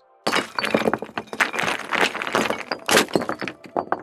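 Sound effect of many hard fragments breaking and clattering together in a dense, continuous rush, starting a moment in and cutting off abruptly just before the end.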